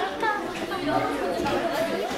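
Chatter of many voices talking over one another in a large hall, spectators and coaches around a children's judo bout.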